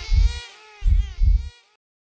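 Heartbeat sound effect, low thumps in pairs about a second apart, under a high, wavering voice-like tone. It all stops about one and a half seconds in.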